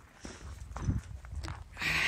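Footsteps walking on packed snow: a few irregular steps about half a second apart, with a louder scuffing crunch near the end.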